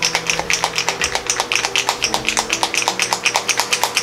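17 ml Vallejo Panzer Aces dropper bottle of paint being shaken hard, the mixing ball inside rattling against the plastic about nine times a second, mixing the paint before use.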